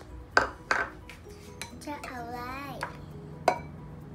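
Small ceramic ingredient bowls clinking against the rim of a ceramic mixing bowl as ingredients are tipped in: two sharp clinks close together just after the start and one more near the end. Soft background music plays underneath, and a short wavering voice sound comes in the middle.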